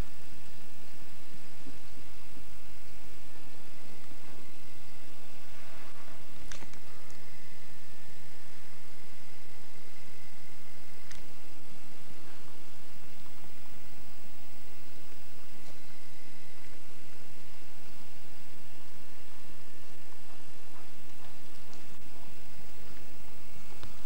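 Steady low electrical hum with constant tape hiss, broken only by a couple of faint clicks.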